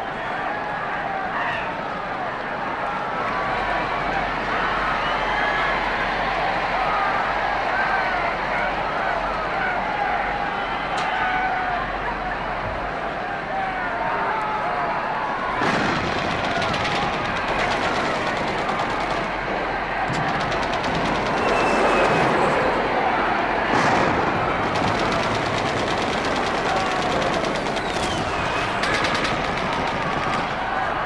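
Dense layered sound-collage texture of many overlapping wavering pitched sounds. About halfway through, rapid crackling and rattling joins it and continues.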